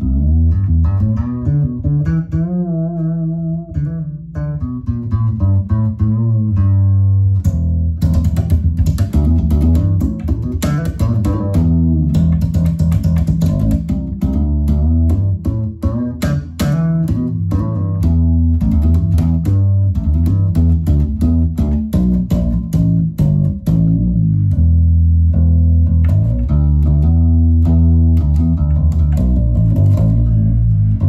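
Music Man StingRay fretless bass strung with flatwound strings, played as a continuous melodic line. Notes waver with vibrato in the first few seconds, and the playing turns busier from about eight seconds in.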